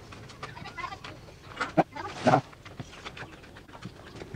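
Birds calling in short chirps, with two louder calls a little before and just after two seconds in, the second the loudest.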